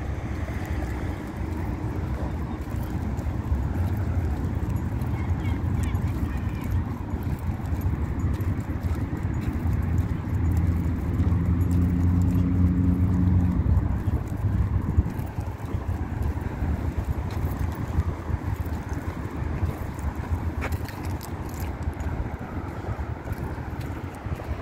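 Road traffic passing on a nearby multi-lane road: steady engine and tyre noise, with one vehicle's engine hum swelling louder from about 9 to 14 seconds in.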